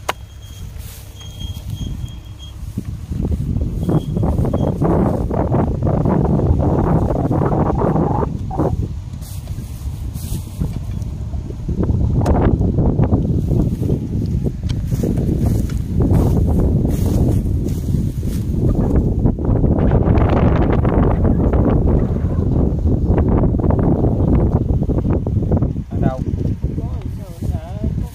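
Wind buffeting the microphone: a loud, low rumble that comes in gusts, easing briefly twice in the middle.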